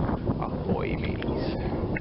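Wind buffeting the microphone aboard a sailboat under sail, a steady low rumble, with a few brief squeaky sounds over it.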